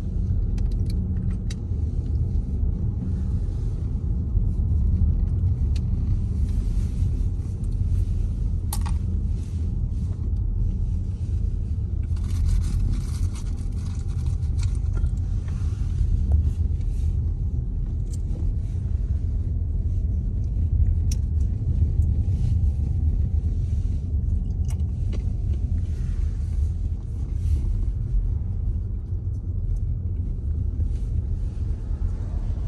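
Car cabin road noise while driving: a steady low rumble of tyres and engine, with a couple of brief clicks.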